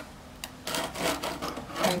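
Steel trowel scraped flat across fresh cement render over a recessed electrical box, a few rubbing strokes starting about half a second in: a check that the box sits flush with the plaster surface, which it does.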